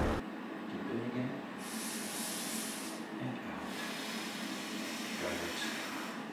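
A woman breathing hard through a surgical face mask while bracing for a piercing needle: one long, loud hissing breath about two seconds in, then fainter heavy breathing.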